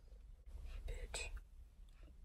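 A girl whispering a single word, softly and briefly, about half a second in, over the faint low hum of a car cabin.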